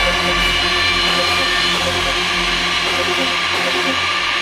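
Uplifting trance music with sustained synth pad chords; the bass drops away in the second half, as in a breakdown.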